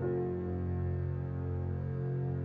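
Slow, calm instrumental background music of long, steadily held chords.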